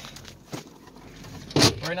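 The 6.6 L LBZ Duramax V8 turbodiesel of a 2007 Chevrolet Silverado 2500HD running low, heard from inside the cab, with a few light clicks. Near the end comes one short loud burst of noise, just before a man speaks.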